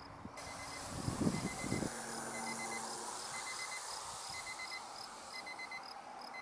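Insects chirping in an even rhythm about twice a second, joined from about two seconds in by short high beeps in groups of four, about once a second. Wind buffets the microphone between about one and two seconds in.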